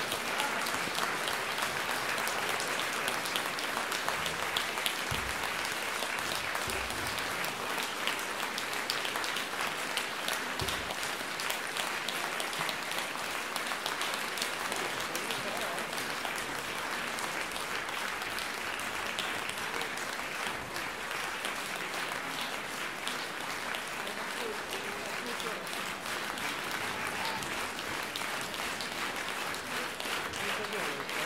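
Theatre audience applauding steadily, many hands clapping at once, with a few low thumps in the first third.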